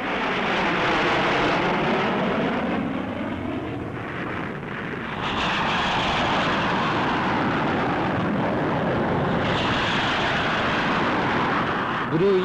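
Jet fighters flying past in a display flight: a loud, steady jet roar with a sweeping, swirling tone as the aircraft pass. The roar dips slightly about four seconds in, then swells again, with a brighter pass near the end.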